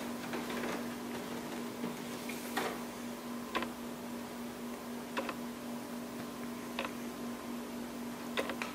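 A few light plastic clicks and taps, about four spread over several seconds, as a toner cartridge is lifted out of a copier's cartridge bay, over a steady low hum.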